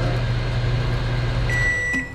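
Microwave oven running with a steady hum, which stops near the end as the oven gives one beep to signal that the heating cycle is done.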